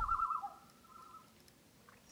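A single thin whistled bird call, trilling for a moment and then held on one pitch, fading out after about a second into near silence.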